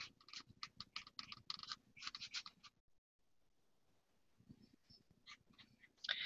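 Faint, quick scratchy strokes of a paintbrush working paint onto a paper art journal page, stopping about two and a half seconds in.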